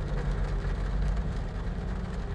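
A low, steady rumble with a faint hiss above it.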